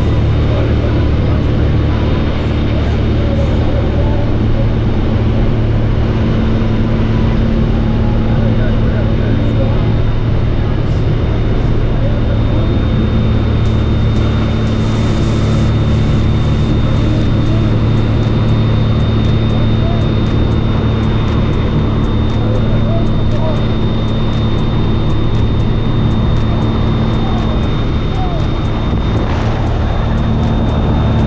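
Small propeller plane's engine droning steadily and loudly, heard from inside the cabin in flight, with rushing wind over it.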